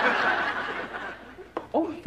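Sitcom studio audience laughter after a joke, dying away over the first second and a half. Near the end a single voice starts to chuckle.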